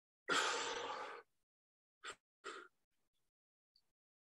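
A man breathing hard from the exertion of a kettlebell workout. One long, heavy breath comes about a quarter second in and lasts about a second, then two short, quick breaths follow about two seconds in.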